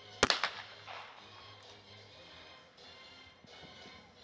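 One shotgun shot at a trap clay, loud and sharp about a quarter second in, with a brief ringing tail. The shot misses the target. Faint background music runs underneath.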